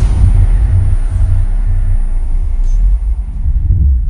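A loud, deep, steady rumble of cinematic sound design, with a faint thin high whine above it.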